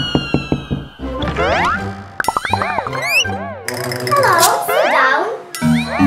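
Playful children's music layered with cartoon sound effects: a long falling whistle-like glide in the first second, quick rising slide-whistle boings around the middle, and dense warbling, wobbling tones after that.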